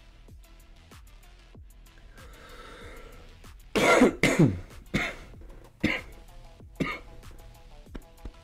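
A man coughing and clearing his throat in a fit that starts about four seconds in: a loud double cough, then a few shorter ones about a second apart. It comes from chest congestion, which he puts down to a half asthma attack brought on by heavy, humid air. Quiet background music plays underneath.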